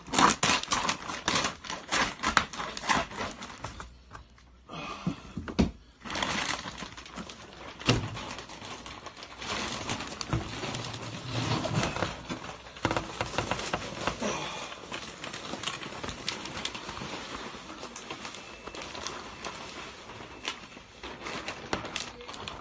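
Terra Sahara bioactive soil substrate poured from its bag into a glass tank: a dense, rapid patter of soil and grit landing, with a brief lull about four seconds in.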